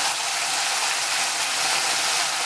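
Chopped onion, peppers and garlic frying in oil in a stainless steel pot: a steady sizzle, with a slotted spatula stirring through it.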